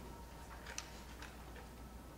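Quiet room tone with a steady low hum and a few faint clicks and rustles of papers being handled at a table, most of them around the middle.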